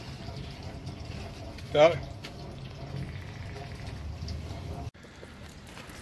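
A single short vocal exclamation about two seconds in, over a low steady outdoor rumble. The background drops abruptly at a cut near five seconds.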